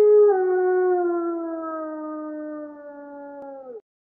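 A single long wolf howl that slowly falls in pitch and fades, then cuts off suddenly near the end.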